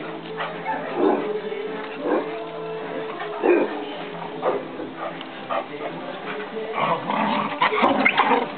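Dog barking in short, separate barks every second or so, with a quicker flurry near the end, over steady background music.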